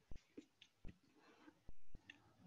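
Three faint clicks over low background noise, with a short louder burst of noise near the end.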